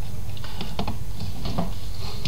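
A few short taps and clicks at a computer, a cluster in the first second and another about one and a half seconds in, over a steady low hum.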